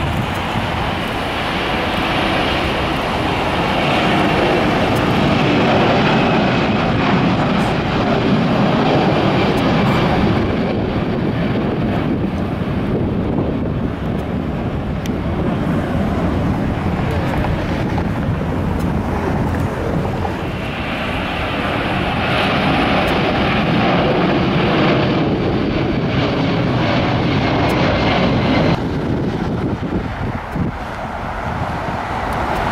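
Four-engined Airbus A340 jet taking off at full thrust: loud, continuous engine noise as it lifts off and climbs away, swelling and easing twice.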